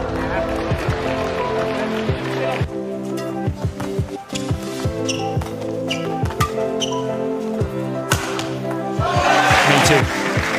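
A badminton rally: irregular sharp cracks of rackets striking the shuttlecock, heard over background music with sustained tones. A broad crowd roar swells near the end.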